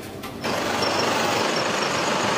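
A vehicle engine running steadily, coming in about half a second in, with a faint, rapid, high-pitched ticking over it.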